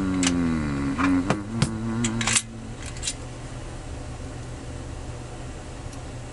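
Steel hex keys clicking against each other and their holder as they are pulled out and tried, a few sharp clicks in the first two and a half seconds, under a man's long hummed "mmm" that slowly falls in pitch; after that only a faint click or two over a low steady background.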